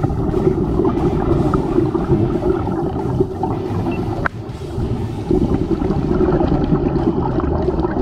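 Muffled, rushing underwater water noise picked up through a camera's waterproof housing, with a single sharp click about four seconds in.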